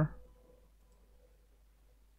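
Near silence: faint room tone with a steady hum, after a man's voice trails off at the very start.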